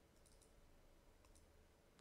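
Near silence, with a few very faint computer mouse clicks as a folder is picked in a dialog box and OK is pressed.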